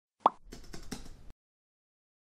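Intro sound effect: a single pop, followed by a quick run of light keyboard-typing clicks lasting about a second.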